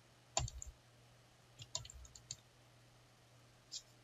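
Faint clicking of a computer keyboard: a quick run of keystrokes about half a second in, a few more in the middle and one near the end.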